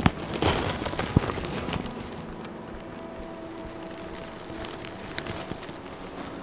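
Tussar silk saree fabric rustling and crackling as it is handled and draped, with a few light clicks, settling after about two seconds into quiet room sound with a faint steady hum.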